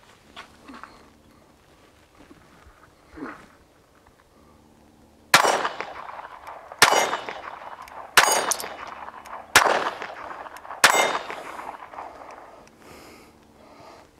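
Browning Buck Mark Camper .22 LR pistol firing five shots about a second and a half apart, each a sharp crack with a short ringing tail. The shots start about five seconds in.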